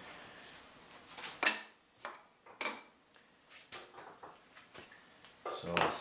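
Small wooden hive-frame bars being handled and set down on a saw sled: a few light clacks of wood on wood, the sharpest about a second and a half in and another near three seconds, with fainter taps after.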